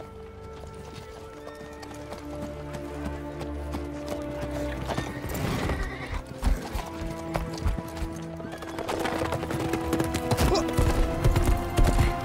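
Hooves of many horses setting off at a gallop over dirt, a rapid irregular clatter that starts about halfway through, over a sustained orchestral film score that builds in loudness.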